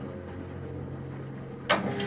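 1980 Philco W35A washing machine running mid-cycle with a steady motor hum. Near the end a single sharp click, after which the running note shifts to a new pitch.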